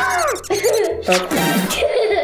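A man's wordless cries as he is squirted with water from a spray bottle: a falling yelp right at the start, then wavering hooting sounds, with background music underneath.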